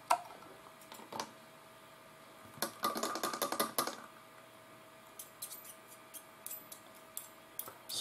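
Quiet light clicks and taps of a plastic pipette, cleaner bottle and airbrush being handled while cleaner is dripped into the airbrush cup, with a quick run of clicks between about two and a half and four seconds in.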